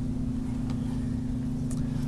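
A steady low hum, with two faint clicks about a second apart.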